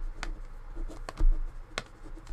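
A few sharp clicks spread over two seconds, with a dull low thump a little after the middle that is the loudest sound, over a faint low hum.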